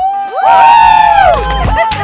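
Several women cheering together in one long, loud held "woo", their voices overlapping and rising together before falling away after about a second and a half.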